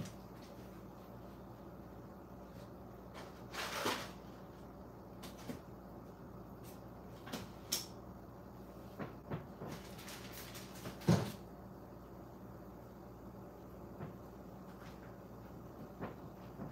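Scattered knocks and rustling of items being handled, moved and set down on a table, with one louder thump about eleven seconds in, over a faint low hum.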